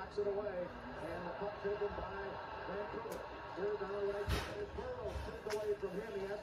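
Hockey play-by-play commentary from a TV broadcast, heard faintly through the television's speaker across the room, with a few sharp clicks in the second half.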